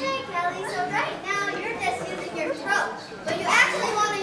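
Girls' voices shouting and calling out to each other in a string of short, high-pitched calls.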